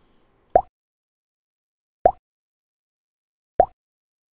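Three identical pop sound effects, about a second and a half apart, each a short, quick rising blip. They are editing effects marking on-screen pop-ups.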